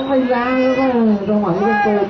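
A commentator's voice holding one long, drawn-out call, its pitch falling slightly, with a short break about one and a half seconds in before it carries on.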